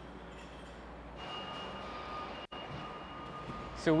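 Steady low machinery hum in a large steel-framed building. A little over a second in, two faint, steady, high-pitched whining tones join it, and the sound cuts out for an instant about halfway through.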